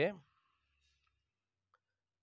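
A man's voice trailing off at the start, then near silence with a single faint click shortly before the end.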